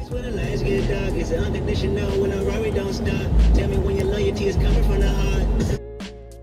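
Road and wind noise inside a car at freeway speed: a loud, dense rumble that swells twice in the low end. Music and a voice are mixed in. It cuts in suddenly and cuts off just before the end.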